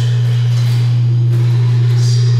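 A loud, steady low electronic drone from a large wooden speaker cabinet in a sound installation, with fainter wavering tones above it. The level slowly rises.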